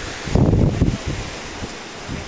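Wind buffeting the microphone in uneven gusts, loudest about half a second in, over ocean surf surging and washing against rocks.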